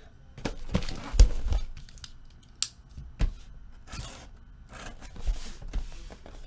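Utility knife slicing the packing tape on a cardboard case in a series of short scrapes, with a few dull thumps as the box is handled.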